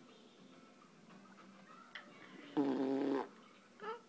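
One short vocal sound held at a steady pitch for under a second, a little past the middle; the rest is quiet room tone.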